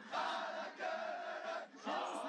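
A sports team of men chanting and shouting together as a group battle cry. The chant comes in three held phrases, with short breaks about three-quarters of a second and a second and a half in.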